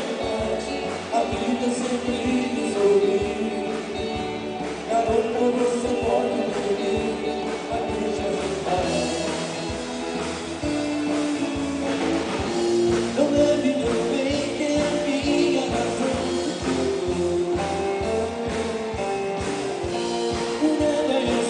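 Live rock-and-roll band music: a man singing lead into a microphone over guitar, with a bass line and a steady beat.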